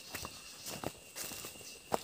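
Hand-washing clothes over a basin of soapy water: about half a dozen soft, scattered taps and scuffs in two seconds as cloth is wrung and handled and people shift on the dry ground.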